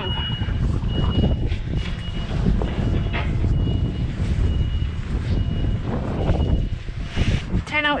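Vehicle reversing alarm: a single high-pitched beep repeating about once a second, over a continuous low rumble.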